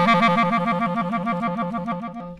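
Clarinet playing a rapid two-note trill in its low register, the pitch flicking back and forth about seven times a second, showing fast finger work.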